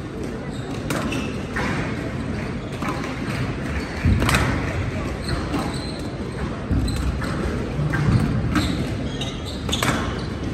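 Squash rally on a glass court: the ball cracks sharply off rackets and walls every second or two, over the steady murmur of spectators in a large hall.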